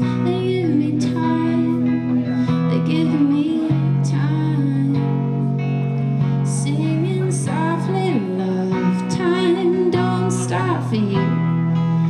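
Live band playing a song: a woman sings a wavering melody over strummed guitar, backed by a second guitar, sustained low bass notes and drums with cymbal strokes.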